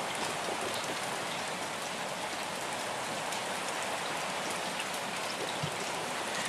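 Rain falling on a parked car, heard from inside the cabin as a steady, even patter on the glass and body.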